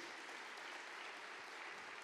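Steady, fairly faint applause from an audience spread through a large hall, heard from a distance.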